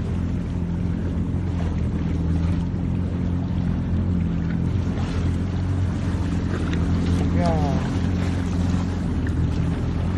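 A watercraft engine running steadily, with rushing wind and water noise over it. A short falling cry comes about seven and a half seconds in.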